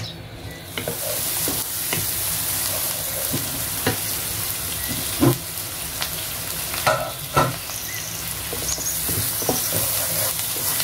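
Chopped onions sizzling in hot oil in a nonstick pan, with a wooden spatula scraping and knocking against the pan as they are stirred. The sizzle grows louder about a second in, and a few louder knocks come around the middle.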